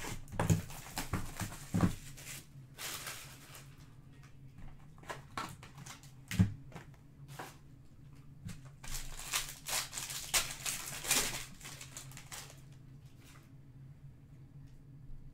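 Clicks and knocks of trading cards and card holders being handled on the table, then, about nine seconds in, a foil pack wrapper crinkling and tearing for a few seconds as a Topps Inception pack is opened.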